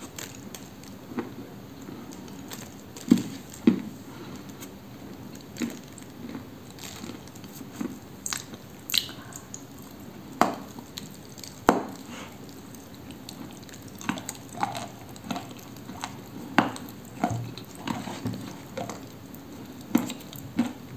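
Close-up eating of a baked Cambrian clay cookie coated in clay paste: wet chewing and mouth sounds with irregular sharp crunches and clicks, a few louder ones about three seconds in and near the middle, and a run of smaller ones in the last few seconds.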